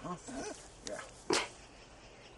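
One short, sharp puff of breath from an alpaca close to the microphone, a little past the middle, between a few brief spoken words.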